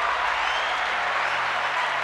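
Recorded crowd applause and cheering played as a sound effect from a podcast soundboard: a steady, dense wash of clapping, switched on suddenly and running on at an even level.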